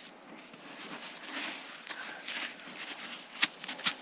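Footsteps crunching through deep snow, uneven and swelling in the middle, with a few sharp clicks near the end.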